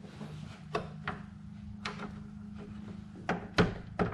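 A handful of sharp clicks and knocks as a metal grille bracket is pried and shifted against the plastic grille shell by hand, over a steady low hum that stops shortly before the end.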